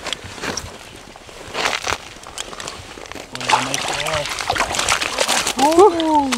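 Water splashing and sloshing in an ice-fishing hole as a walleye is hand-lined up through it, with crunching of wet slush and ice under the angler's hands. A man gives short vocal exclamations midway and near the end.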